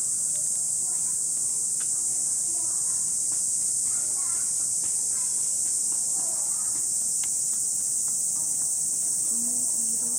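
Steady, high-pitched drone of cicadas in full summer chorus, unchanging throughout, with faint voices of people in the background.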